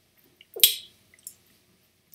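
A short wet mouth click, like a lip smack, a little over half a second in, followed by a couple of faint small ticks; otherwise quiet.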